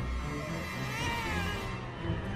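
A baby crying, with a drawn-out wail that rises and falls about a second in, over background music.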